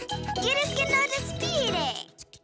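Playful cartoon underscore music with light tinkling notes over a bass line, ending in a descending sliding glide.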